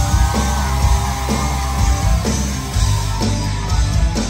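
Rock band playing live: distorted electric guitars, bass and drums with a steady beat of about two hits a second, heard loud from within the crowd.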